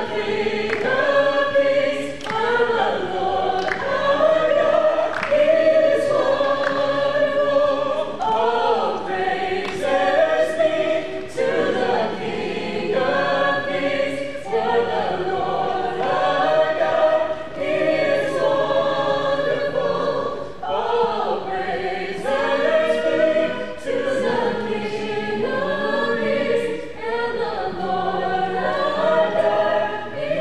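A small group of men and women singing a song together, accompanied by a strummed acoustic guitar.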